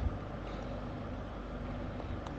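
Steady low background hiss with a faint hum, with no distinct event: the noise floor of the voice-over recording.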